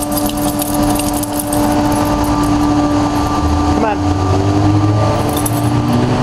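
Steady droning hum of the carpet cleaners' truck-mounted machine, over city street noise. About three and a half seconds in, the deeper rumble of a passing truck builds up.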